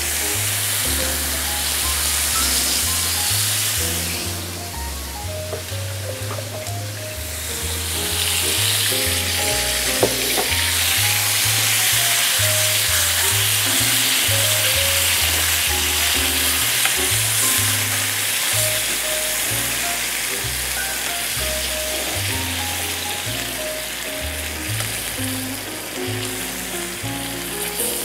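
Pork rib eye steaks sizzling in a frying pan on a gas burner as chunky salsa is spooned over them and worked in with tongs, the sizzle louder from about eight seconds in. Background music with a stepping bass line plays under it.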